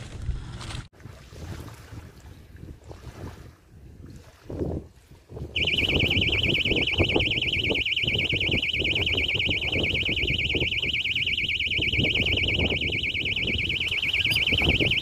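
Electronic bite alarm on a ledgered fishing rod sounding a loud, continuous high-pitched beeping tone that starts suddenly about five and a half seconds in: a fish has taken the bait and is running with the line. Before that there is only low wind noise on the microphone.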